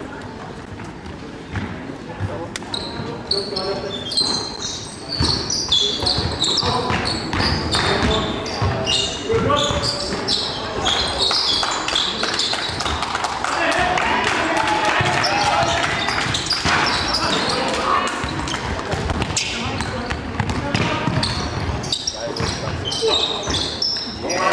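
Basketball game in play in an echoing sports hall: the ball bouncing on the floor again and again, many short high squeaks of sneakers on the court, and players' voices calling out.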